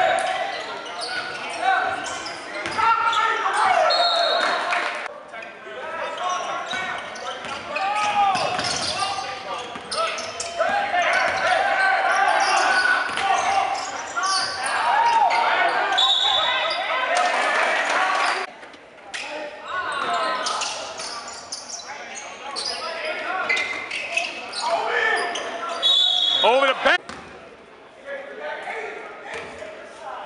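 Live basketball game in a large gym: players and spectators shouting and talking over the ball bouncing on the hardwood floor, with three short high referee's whistle blasts, about 4, 16 and 26 seconds in, the last one stopping play for a free throw.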